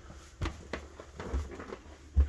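Footsteps on the steps and hard floor inside an RV: a few soft knocks, the clearest about half a second in, with low handling rumble in between.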